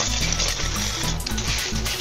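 Clear plastic bag crinkling and rustling as hands open it, over steady background music.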